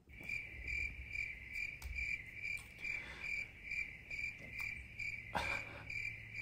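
Crickets-chirping sound effect, the comic cue for an awkward silence: an even run of high chirps, about two a second, that cuts in and out abruptly.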